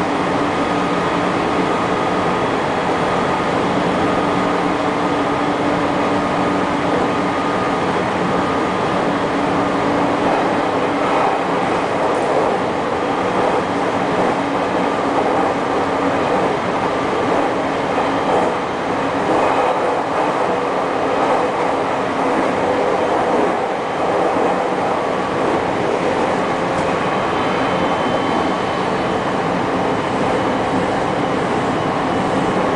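JR Kyushu 813 series electric train running at speed, heard from inside the driver's cab: a steady rumble of the train on the rails with a few held tones over it.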